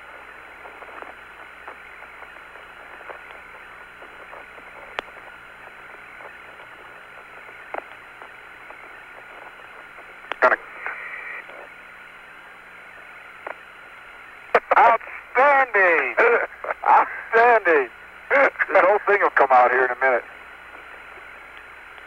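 Steady hiss of the Apollo lunar-surface radio link, narrow and tinny, with a few faint clicks. About two-thirds of the way in, a man's voice comes over the radio for several seconds.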